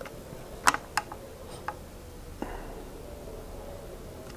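A handful of light clicks and taps as a smartphone is turned over and handled, about five within the first two and a half seconds, over a quiet room background.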